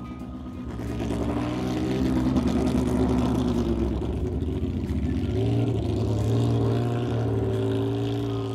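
A car engine running. It gets louder from about a second in, its pitch climbs and falls back, then climbs again about halfway through.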